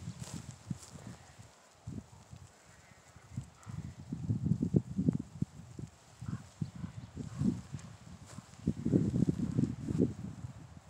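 Wind buffeting the microphone in irregular low gusts, strongest about four to five seconds in and again near the end.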